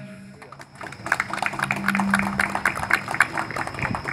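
Scattered hand clapping from a small group, starting about a second in and going on irregularly.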